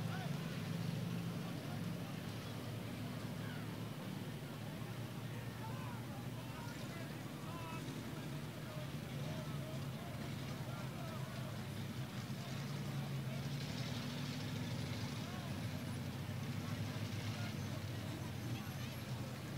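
Steady low drone of idling vehicle engines, with indistinct voices of people talking.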